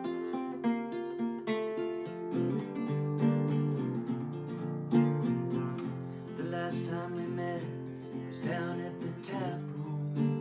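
Solo acoustic guitar playing a song's intro: chords and picked notes ringing on, with a new note or chord every fraction of a second.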